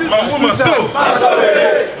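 Loud chanting by a man's voice through a microphone and loudspeaker, with a crowd shouting along; one line is drawn out near the middle.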